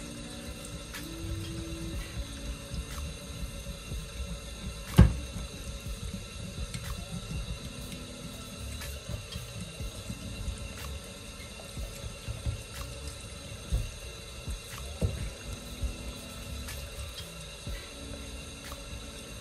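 Hot tap water running into a stainless steel sink over a glass jar being rinsed and rubbed by hand, under background music with held tones. There is a sharp knock about five seconds in, the loudest sound, and a couple of smaller knocks later.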